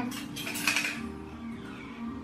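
Small metal wire basket rattling and clinking as a toddler lifts and handles it, with a quick cluster of clinks in the first second.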